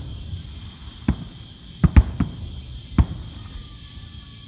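Distant fireworks going off: five sharp bangs, three of them close together around two seconds in, and a last one about a second later.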